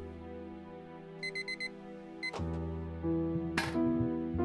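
Electronic alarm clock beeping: a quick run of short high beeps about a second in, then one more, over soft background music. A brief noisy rustle comes near the end.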